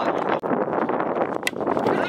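Wind on the microphone, a dense steady rushing, with faint voices behind it and one short sharp click about one and a half seconds in.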